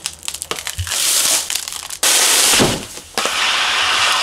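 Plastic shrink-wrap crinkling and tearing as it is pulled off a rolled, compressed mattress. The first two seconds crackle, then come two loud stretches of steady hissing rustle with a short pause between them.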